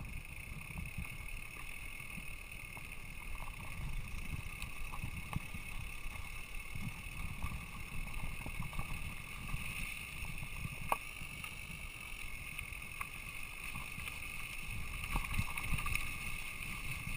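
Mountain bike riding down a dirt singletrack, heard from a camera on the bike or rider: a continuous low rumble of the tyres and frame over the trail with a steady high buzz, and scattered small knocks and rattles, one sharper knock about eleven seconds in.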